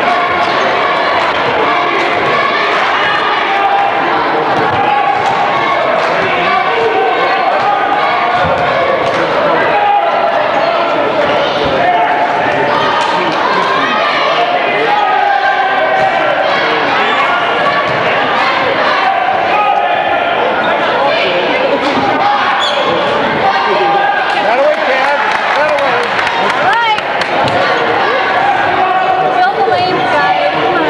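A basketball bouncing on a hardwood gym floor during play, over the steady chatter of a crowd of spectators.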